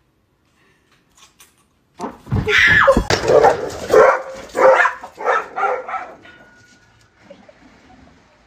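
Dog barking: a quick run of barks and yelps starting about two seconds in and trailing off after about six seconds.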